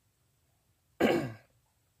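A man clears his throat once, about a second in, a short rough burst lasting about half a second.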